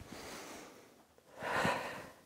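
A woman breathing out audibly twice while exercising, the second breath, about one and a half seconds in, the louder.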